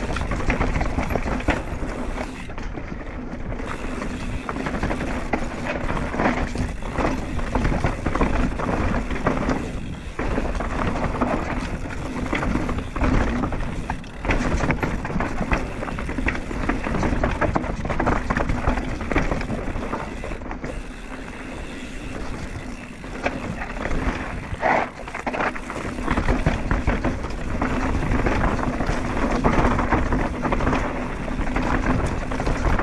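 Mountain bike riding fast down a rough dirt trail: continuous rush of tyres and wind on the helmet camera, with frequent clattering knocks from the bike over roots and rocks.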